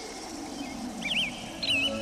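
Birds chirping: two short, warbling chirp phrases, one about a second in and another near the end, over a low steady background that fades in.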